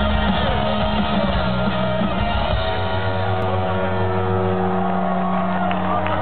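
Live rock band playing loudly through a festival PA: distorted electric guitar, bass and drums, settling about halfway through into a long held chord that rings steadily.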